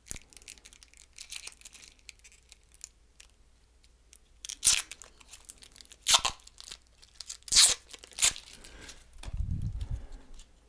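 Handling noise from a small plastic wireless-earphone case and earbuds: scattered clicks and a few short crinkling scrapes, the loudest about four and a half, six, seven and a half and eight seconds in. A low rumble comes near the end.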